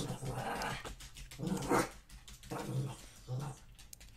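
A dog growling in short, low grumbles, about four in a row.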